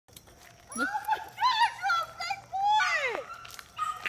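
High-pitched excited voices calling out without clear words, ending in a long cry that falls in pitch.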